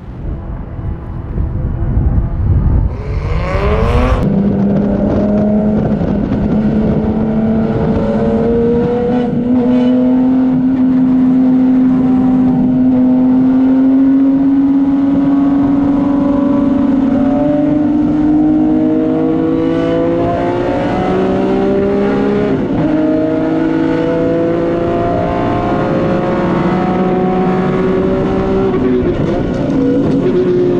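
Race car engine heard from inside the cockpit, pulling hard with its pitch climbing slowly and steadily after a quick rev about four seconds in. The pitch drops sharply twice in the last third.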